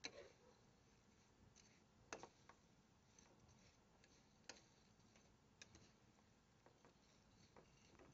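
Near silence broken by a few faint, irregular clicks of a metal spoon against a frying pan as dry fideo noodles are turned over to brown in oil.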